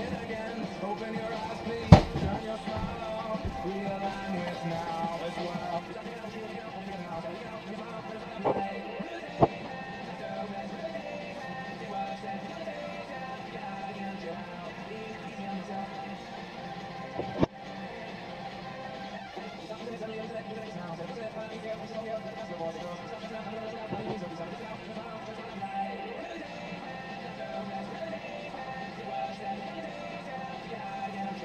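Radio playing music in the background, with a few sharp knocks; the loudest is about two seconds in, and another comes near the middle.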